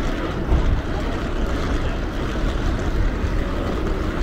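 Steady outdoor rumble of traffic at a taxi rank, with wind buffeting the microphone in an uneven low rumble.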